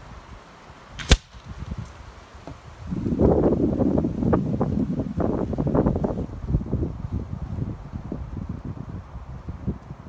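A single sharp crack about a second in: a .30 air rifle pellet striking the paper target on its cardboard backing. From about three seconds in, gusting wind buffets the microphone for several seconds, rising and falling.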